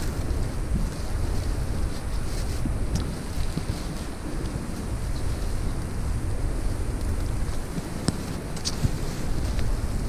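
Wind buffeting the microphone: a steady low rumbling noise, with a few faint light ticks about eight seconds in.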